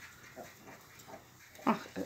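A few short, faint grunts from a pot-bellied piglet that is cross at being swatted by the sow's tail. A louder exclamation comes near the end.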